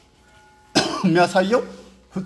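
A man's voice, starting abruptly about three quarters of a second in after a short pause.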